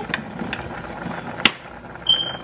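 Small kitchen handling noises at a stovetop while pots are being seasoned: a couple of faint clicks and one sharp click about one and a half seconds in, over a steady low hiss.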